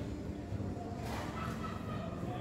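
Faint cheerful shouts of people out in the street, over a low steady rumble of background noise.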